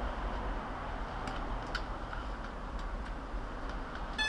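Faint clicks and handling noise as a battery connector is plugged into a JJRC X1 quadcopter. There are a couple of sharper ticks a little over a second in, over a steady low background rumble.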